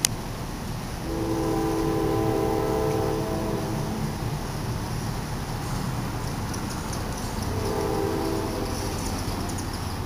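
Train horn sounding two long blasts, about three and two seconds long, each a chord of several steady notes, over a steady low rumble. A short sharp click right at the very start.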